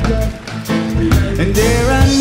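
Live reggae band playing: keyboard, electric guitar and drums, with a brief dip in loudness shortly after the start.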